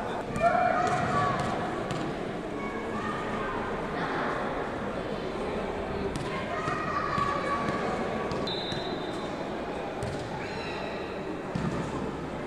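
Indoor sports hall ambience: players and spectators talking at a distance, with occasional thuds of a ball bouncing on the wooden court between rallies. A brief steady high tone sounds about two-thirds of the way through.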